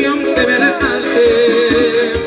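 Live Latin band music: a steady drum beat under a melodic lead line from the band's keyboards and electric guitar.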